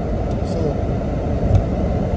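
Steady low rumble of road and engine noise inside a car cabin while driving.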